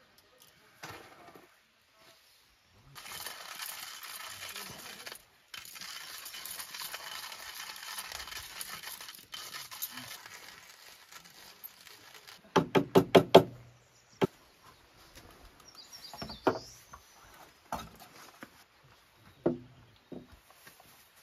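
Hand coffee grinder being cranked: a steady grinding rasp for about six seconds, with one brief break. A few seconds later comes a quick run of about six loud knocks.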